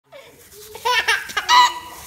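Baby's belly laughter: a run of short, high-pitched laughing bursts starting about a second in, the last one the loudest.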